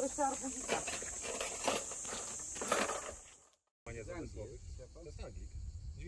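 Faint talk in the background under a steady high-pitched insect drone. A sudden break about halfway through is followed by quieter voices and a low rumble.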